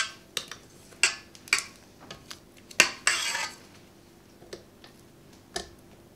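Spatula scraping and knocking against a stainless steel stand-mixer bowl and its flat beater: a string of sharp clinks and scrapes, the loudest knock just before the three-second mark, followed by a short scrape.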